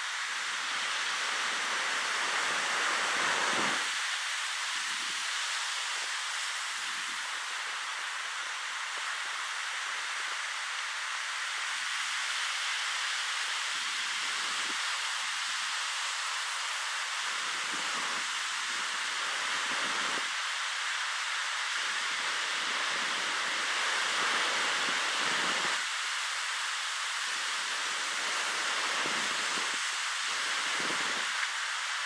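Ocean surf washing onto the shore: a steady hiss of breaking waves that swells and eases every few seconds.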